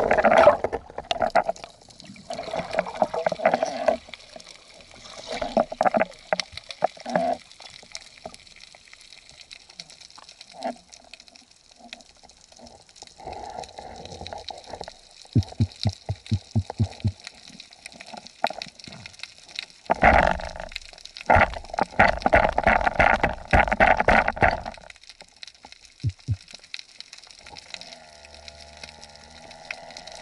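Water gurgling and swishing around an underwater action camera housing as a freediver moves, in irregular bursts, loudest in a long stretch about two-thirds of the way through, with a quick run of low thuds shortly before it.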